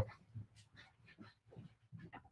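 A dog making a few faint, short sounds in the background.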